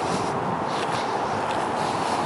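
Steady outdoor background noise on a handheld camera's microphone, with a few short, faint high chirps.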